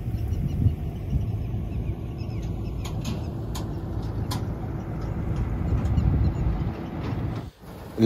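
Preet combine harvester's engine running with a steady low rumble, with a few faint clicks about three to four seconds in.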